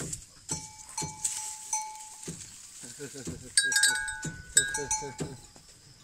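Cattle at a pasture fence, heard close: a run of short clicks and knocks, with brief bell-like ringing tones that come and go. Short low sounds crowd in from about halfway through.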